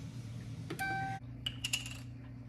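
A click and a short electronic beep about three-quarters of a second in, then a few quick clicks with a higher beep, over a steady low hum.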